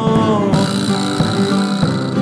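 Instrumental passage of a rock song led by guitars, with no singing. Some notes slide downward at the start, and a bright high wash joins about half a second in.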